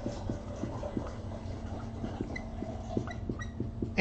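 Felt-tip marker writing words on a board: a string of short, faint strokes and small squeaks over a low steady hum.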